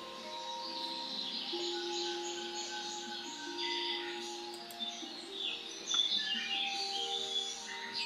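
Quiet background music of held, slowly changing notes, with birds chirping over it.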